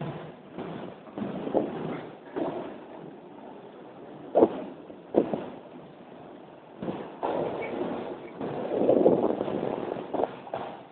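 Skate wheels rolling over a concrete floor: an uneven rumble that swells and fades, with two sharp knocks about four and a half and five seconds in, and a longer, louder stretch of rolling near the end.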